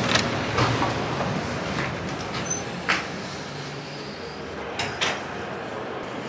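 A heavy wooden door being pushed open and swinging, giving a handful of short knocks and clunks over a steady background hubbub.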